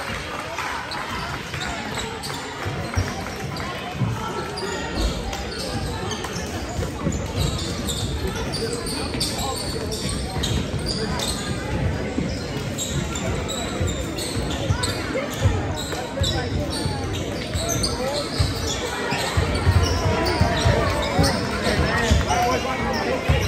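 Many voices chattering in a school gymnasium, with sneakers squeaking on the hardwood court and a few thuds of a basketball bouncing.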